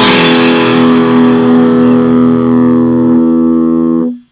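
Heavily distorted electric guitar holding the band's final chord and letting it ring out, the last sound of a powerviolence song. The chord stays steady while its top end slowly fades, and the lowest note drops away near the end.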